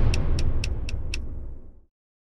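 Film title-card sound design: the low rumble of a booming hit dying away, with five sharp ticks about four a second on top, fading out just before the end.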